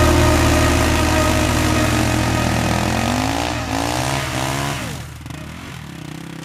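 Motocross bike engine running, its pitch rising and falling in a few revs before it drops away about five seconds in.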